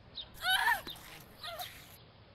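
A woman's short, high-pitched cry with a falling pitch about half a second in, then a fainter cry, as she is grabbed in an assault.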